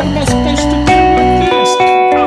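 Electric guitar picking a repeating arpeggio pattern over an F#7 chord against a drum backing loop. About one and a half seconds in, the low backing drops out and the guitar carries on alone.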